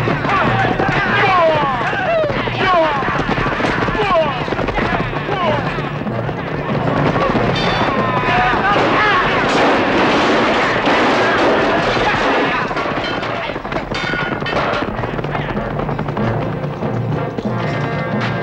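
Battle sound of a mounted charge: many men shouting war cries over galloping hooves and sharp impacts. Near the end, steady music takes over.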